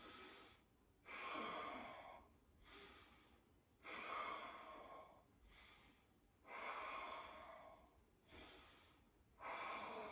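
A woman breathing audibly in a steady paced yoga rhythm, in and out about every one and a half seconds, with every other breath louder. The breaths are timed to rounding and extending the spine.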